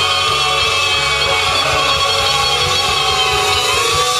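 Live rock jam band playing a loud instrumental passage: electric guitars over a bass line that moves from note to note about every half second.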